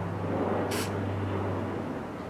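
One short hiss of contact cleaner sprayed from an aerosol can through its nozzle straw into a slide switch, to clear the switch's scratchy, crackling contacts, coming a little under a second in. A steady low hum runs underneath.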